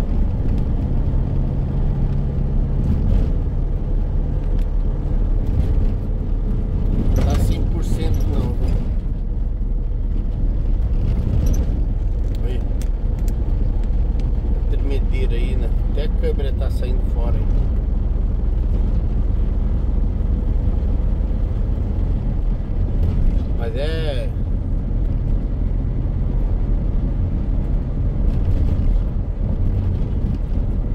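Steady in-cab drone of engine and tyre noise from a Mercedes-Benz Sprinter van cruising on an asphalt highway.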